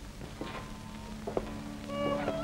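Quiet mono soundtrack of an old black-and-white film: faint steady hum and hiss, with a soft sound about half a second in and a short tap a little past one second. Background music with gliding notes begins right at the end.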